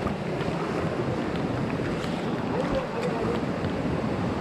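Steady rush of wind buffeting the microphone in monsoon rain, with faint splashing in shallow water.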